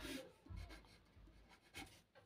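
Faint pen strokes on paper: a few short scratches as "Ans" is written beside the final answer.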